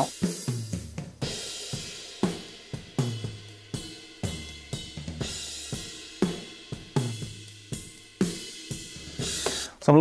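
Drum kit playback through studio monitors from the overhead microphones, small-diaphragm condensers: cymbals and hi-hat wash to the fore, with snare and kick hits underneath in a steady groove of about one strong hit a second.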